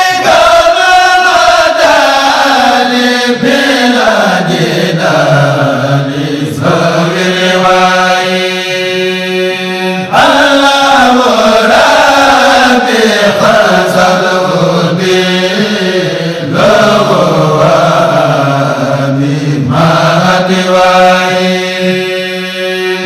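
A solo voice chanting a devotional song in long, drawn-out melodic phrases. Each phrase sinks in pitch, with a short break every four to six seconds.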